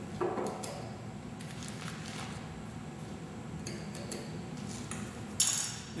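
A scoop clinking and scraping against a juice bottle as hydrated lime powder is tipped in: a few light taps and scrapes, with one sharper click near the end.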